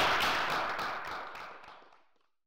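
Audience applauding, a dense patter of claps that fades out steadily to silence by the end.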